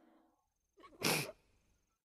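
A woman's single short sobbing breath, a sharp sniffling gasp while crying, about a second in; the rest is near silence.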